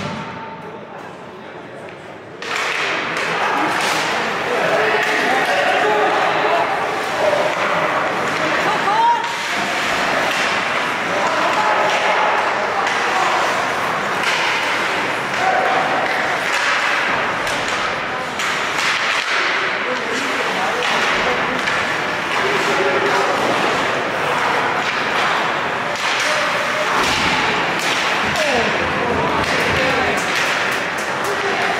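Ice hockey play in a rink: sharp clacks and thuds of sticks, puck and boards mixed with continuous voices of players and spectators. The sound is quieter for the first two seconds, then comes in suddenly and stays busy.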